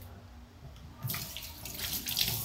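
Kitchen tap turned on, water running into a sink from about a second in.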